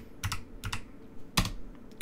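Typing on a computer keyboard: a few separate keystrokes, with one louder key press about one and a half seconds in.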